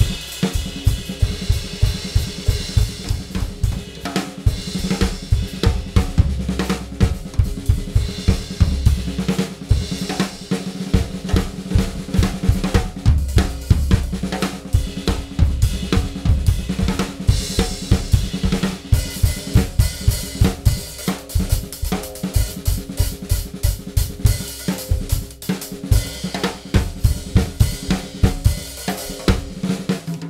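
Two drum kits playing a busy groove together, with kick, snare, hi-hat and cymbals in rapid, continuous strokes, over a steady accompanying groove. The playing is layered with three-against-four polyrhythmic figures.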